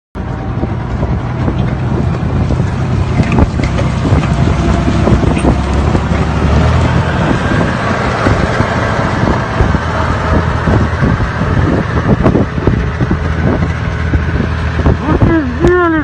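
Tank driving past close by: a steady low engine drone with the clanking and rattling of its tracks, the clanking thickest in the second half.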